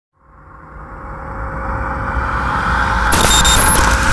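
Logo-intro sound effect: a whoosh with a deep rumble that swells steadily louder, topped by a bright hissing sparkle with a few ringing tones about three seconds in.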